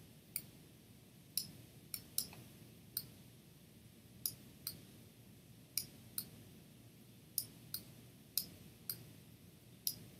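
Computer mouse button clicking: about fourteen short, sharp clicks at an uneven pace, often in close pairs, over faint room noise.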